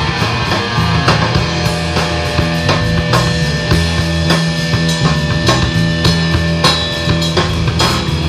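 Live rock band playing an instrumental passage: distorted electric guitar over bass guitar and a drum kit keeping a steady beat.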